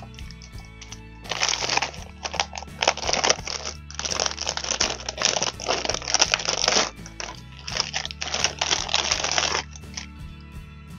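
Clear plastic packaging bag crinkling in dense, irregular bursts as it is handled and pulled open, over steady background music.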